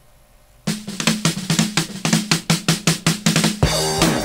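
A drum kit opens the song about a second in with a fast run of strikes, about seven a second. Just before the end the rest of the rock band comes in with bass.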